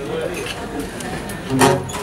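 Indistinct talk, then an acoustic guitar chord strummed about one and a half seconds in.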